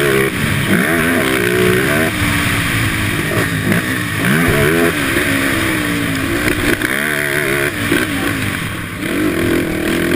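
Motocross dirt bike engine heard from on board, revving up and falling back several times as the rider accelerates, shifts and slows over the track's jumps and turns.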